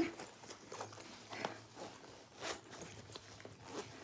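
Faint handling sounds of a fabric crossbody bag: a few soft rustles and clicks about a second apart as its pockets and zippers are handled.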